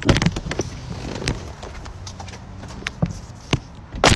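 Scuffling and rustling of clothing and a phone being handled while a person gets out of a car seat, with several sharp clicks and knocks. A hard car door slam starts right at the end.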